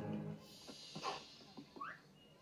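Orchestral cartoon score playing through a TV speaker fades out, leaving a few faint, short sounds and a quick rising squeak near the end.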